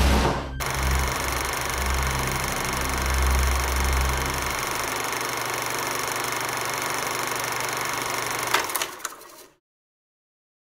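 A door shuts with a loud bang at the start, followed by a low droning rumble with a steady high hum over it that cuts off abruptly shortly before the end.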